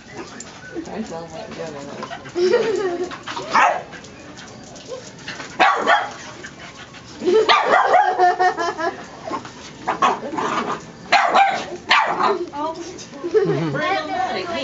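Puppies barking and yipping as they play and wrestle together, short sharp barks coming every second or two.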